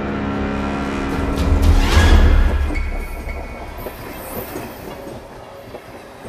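A train passing: a deep rumble that swells to its loudest about two seconds in, then slowly fades away.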